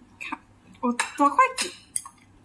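Wooden chopsticks clicking and knocking against a dish while eating, with a few sharp clicks about a second in and again near the end.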